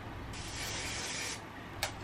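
Aerosol hairspray sprayed in one hissing burst of about a second, followed by a short click near the end.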